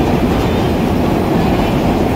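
Vintage New York City subway car running along the track, heard from inside the car: loud, steady noise of wheels on rail and running gear.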